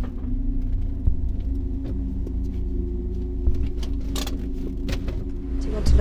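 Car engine and road noise heard from inside the cabin: a steady low drone. A few sharp clicks or rattles come about four to five seconds in.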